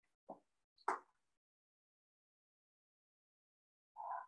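Near silence: quiet room tone broken by two brief, faint clicks in the first second and a short soft sound at the very end.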